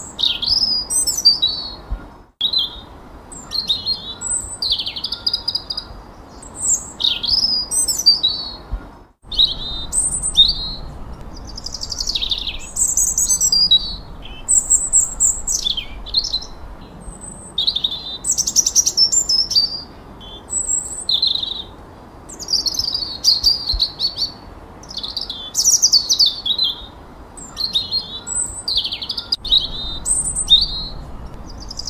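Songbirds singing, one short high whistled or trilled phrase after another, many of them sweeping down in pitch. The sound cuts out completely twice, briefly, a little over two seconds in and about nine seconds in.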